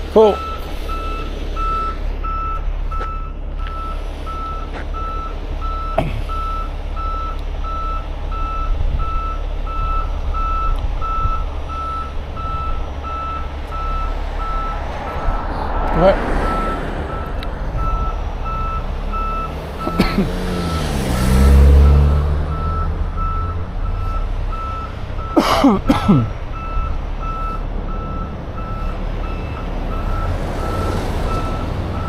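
A truck's reversing alarm beeping steadily over the low rumble of a heavy diesel engine, with cars passing close by several times.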